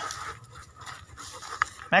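A German Shepherd dog panting close by, fairly quietly.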